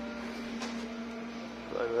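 Steady background hum holding one pitch, with a faint tap about a third of the way in.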